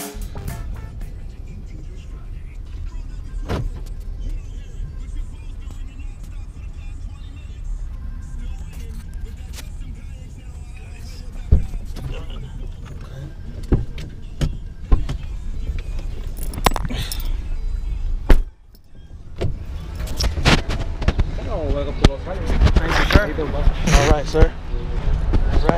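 Steady low road rumble inside a car's cabin, with scattered knocks and clicks of things being handled; a loud knock about 18 seconds in is followed by a brief muffled drop, then voices near the end.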